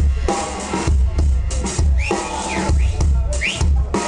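Pub-rock band playing live, the drum kit and bass guitar carrying a steady groove with heavy, regularly repeating low bass notes. Two short rising high sounds cut through, about halfway and near the end.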